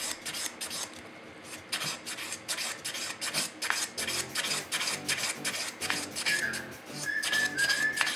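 A cast silver ring rubbed by hand with abrasive paper against a wooden bench pin: quick back-and-forth scratchy strokes, about three or four a second, easing off briefly about a second in. A few short, high whistled notes come in near the end.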